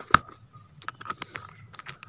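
Screwdriver tip clicking and tapping against the blade screw and steel blade of a small plastic pencil sharpener. One loud click comes just after the start, then a scatter of lighter ticks.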